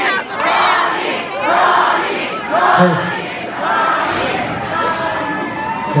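Concert crowd shouting and cheering, many voices together in surges about once a second.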